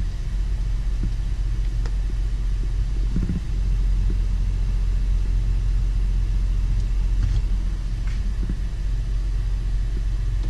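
Steady low rumble inside a Honda Pilot's cabin, with a few faint clicks.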